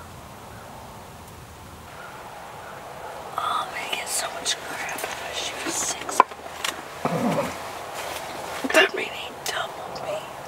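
Hushed whispering starts about three seconds in and carries on in short phrases, with one sharp click about six seconds in.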